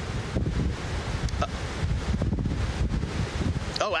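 Gusty wind buffeting the microphone: a low rumble that rises and falls and grows stronger about half a second in. A man's voice starts right at the end.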